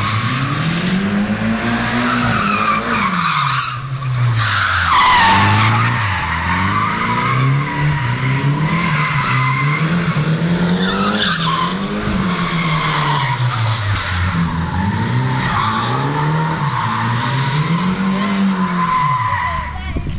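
Nissan 180SX drifting: the engine revs up and down in about five long swells while the tyres squeal without a break. The squeal is loudest about five seconds in.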